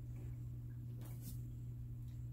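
Quiet room with a steady low hum and a faint rustle of handling about a second in.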